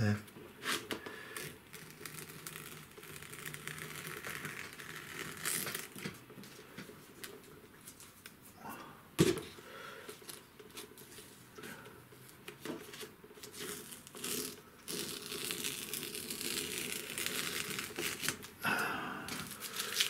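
Tape being peeled off cartridge paper, with crinkling and rustling as the strips come away and are handled. There is one sharp tap about nine seconds in and a louder rustle near the end.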